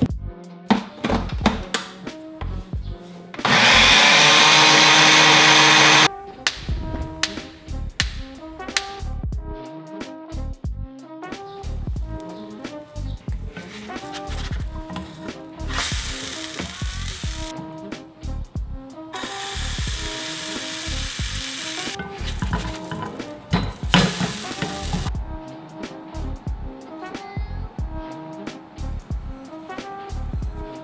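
Background music with a steady beat, and an electric blender running loudly and steadily for about two and a half seconds near the start, mixing a thick pancake batter. Three shorter stretches of loud, steady noise come later in the second half.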